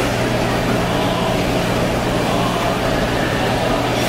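A steady low machine hum under constant background noise, with no distinct events.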